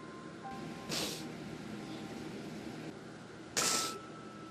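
A woman's sharp intakes of breath as she starts to sob: a short breath about a second in and a louder gasping sob near the end. Faint held notes of background music sit underneath.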